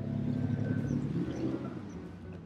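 Pickup truck driving past close by. Its engine and tyre noise rise quickly, are loudest around the middle, and fade toward the end.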